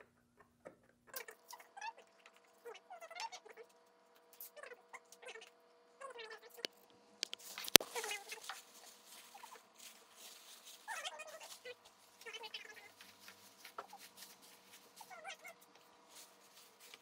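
Sped-up time-lapse audio: short, high-pitched, chipmunk-like chattering bursts over a steady hum, with one sharp click about eight seconds in.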